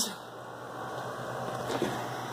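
Steady low background hum with an even hiss, and a faint tick near the end.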